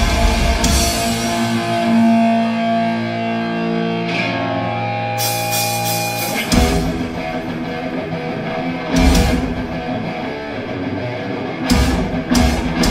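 Live thrash metal band playing: distorted electric guitars and bass with a drum kit. For a few seconds the drums drop out under held guitar notes, then cymbal crashes bring the full band back about six seconds in, with another crash near nine seconds.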